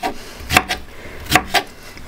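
Kitchen knife chopping strawberries on a wooden cutting board: a handful of separate knocks of the blade through the fruit onto the board, irregularly spaced.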